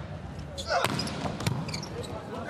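Two sharp volleyball impacts about half a second apart, over steady arena crowd noise.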